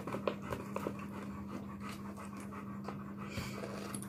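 A Labrador panting steadily, out of breath from a walk, over a steady low hum.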